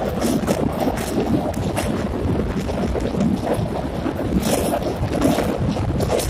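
Passenger train running across a steel truss rail bridge: a steady rumble of wheels on rails, with wind buffeting the microphone at the open door and a few short, sharp clanks.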